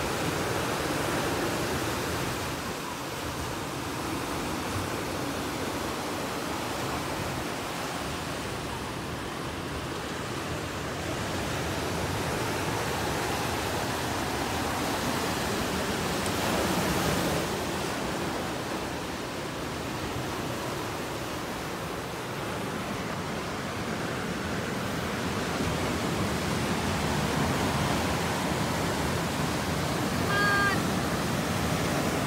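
Ocean surf breaking on a rocky, sandy shore: a steady rushing wash that swells and eases with the waves, loudest about sixteen seconds in.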